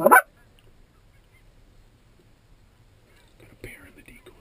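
Goose call blown close to the microphone: one short, loud honk right at the start, the last of a quick series of calls.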